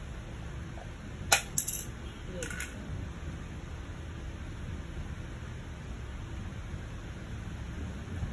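Two sharp clicks, about a third of a second apart, about a second and a half in, then a fainter brief sound a second later, over a steady low hum.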